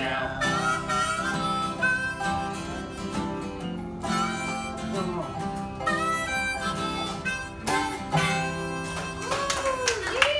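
Instrumental country-blues passage: a harmonica plays the lead with bent notes over a resonator guitar and a strummed acoustic guitar.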